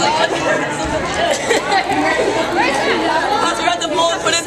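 Several people talking at once: overlapping chatter of voices in a large hall.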